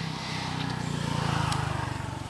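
A motor vehicle's engine passing by, growing louder to a peak about one and a half seconds in and then fading.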